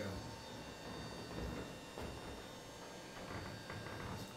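Faint steady hum with a few thin, constant electrical tones: room tone.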